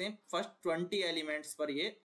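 Speech only: a man talking in short phrases.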